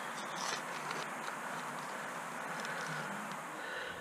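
A hand trowel scraping and cutting into soil a few times near the start, then a steady, even outdoor background hiss.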